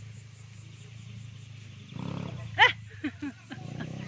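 A person's loud, brief vocal call about two and a half seconds in, followed by a few shorter voice sounds, over a steady low motor hum.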